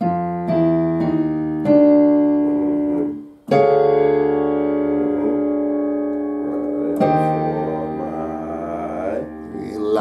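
Electronic keyboard with a piano sound, played with both hands: a few chords struck in quick succession, then fuller chords about three and a half and seven seconds in, each held and left ringing. This is a chord progression in B-flat major.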